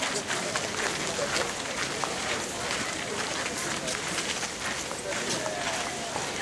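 Busy outdoor crowd: indistinct chatter of many voices with the steady shuffle of many footsteps as a procession walks past.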